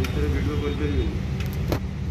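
A voice speaks briefly over a steady low rumble of background road traffic. A single sharp click comes near the end.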